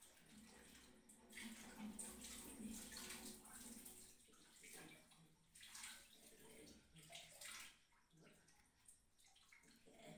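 Faint scratching of a pencil on paper in short, irregular strokes as small seed shapes are drawn.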